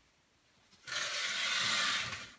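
A fabric curtain being drawn back along its rail: a single sliding rush that starts just before the middle and lasts about a second and a half.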